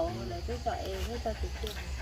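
Soft, quiet talking in an adult voice over a steady low hum.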